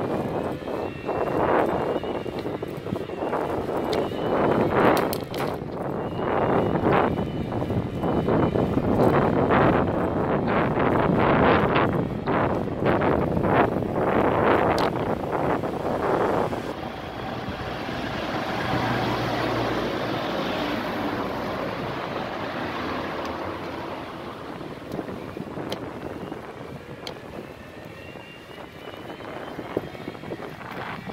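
Wind buffeting the microphone on a moving bicycle, gusty and rough for the first half, then a steadier, softer rush.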